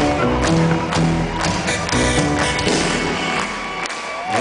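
Live synth-pop band playing a song's instrumental intro: held keyboard notes over a steady drum beat of about two strokes a second.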